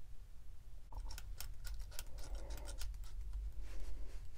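Handling noise from hydroboost hose lines and their metal AN fittings being moved by hand: a quick run of light clicks and rattles starting about a second in, with some rustling.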